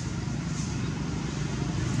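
Steady low drone of a running motor engine, getting slightly louder toward the end.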